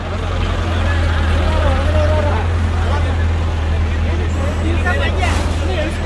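Diesel engine of an ACE crane running steadily with a deep, low hum, with people's voices over it.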